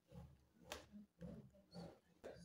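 Near silence: faint handling noise as a laptop is moved about, with one sharp click about a third of the way in.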